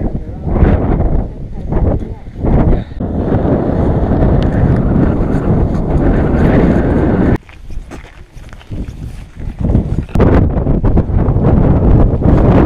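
Strong wind buffeting the camera microphone in gusts, a dense low rumbling noise that drops away suddenly about seven seconds in and surges back near the end.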